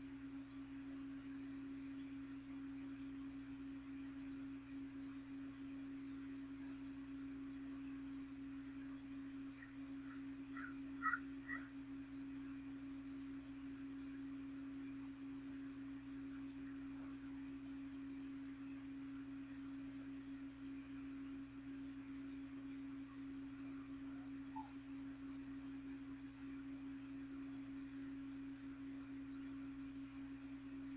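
A box fan running, giving a steady low hum on one unchanging tone. A couple of short high chirps come about eleven seconds in.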